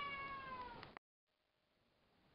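A tabby cat's single long meow, slowly falling in pitch, which cuts off suddenly about a second in. It is a house cat meowing to be let outside.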